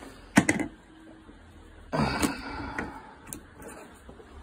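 Carburettor spacer plates and gaskets handled on a workbench: a couple of sharp clacks about half a second in, then a longer clatter as the pile of spacers is sorted through, with a few lighter clicks near the end.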